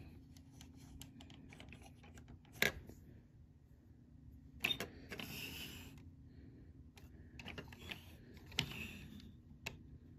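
Small clicks and taps of hard plastic model-kit parts being handled and snapped together, as a gun piece is fitted onto the tail of a Zoids Dark Horn model. The sharpest click comes about two and a half seconds in, with a short rustling scrape around five seconds and more clicks near the end.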